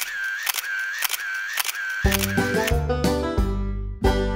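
Camera shutter firing in quick succession, about two shots a second, each with a brief whine. About halfway through, banjo music begins.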